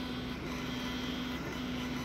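Longer Ray5 10W diode laser engraver running while it engraves a water bottle: a steady fan whir with a low motor hum that breaks off briefly twice.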